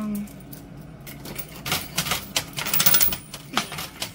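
Coins clicking and clattering in a coin pusher arcade machine as quarters are fed in and tumble among the tokens: a run of quick, sharp clicks that thickens about two and a half seconds in.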